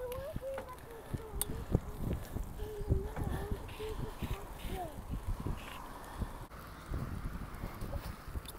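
A child's faint, drawn-out voice, wavering in pitch through the first few seconds. Under it runs an uneven low rumble with irregular bumps from bicycles riding on a paved path.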